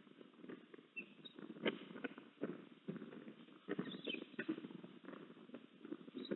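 Crackling and rustling in a stick nest as an eastern osprey tears fish and feeds its chicks: a run of small clicks with one sharper click a little under two seconds in, and a few faint high squeaks.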